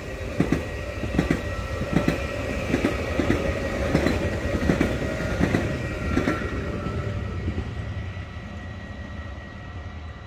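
Electric passenger train passing at speed over a low rumble, its wheels clicking over the rail joints in a regular clickety-clack about every three-quarters of a second. The clicking stops about six seconds in as the last car goes by, and the rumble fades away.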